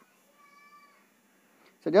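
A faint, short pitched call about half a second long in an otherwise quiet pause.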